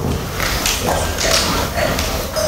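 A wine taster sniffing wine from a glass close to a clip-on microphone: a few short, noisy breaths in through the nose.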